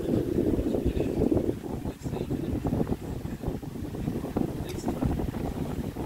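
Low, irregular rumble of air buffeting the phone's microphone, with no clear event standing out.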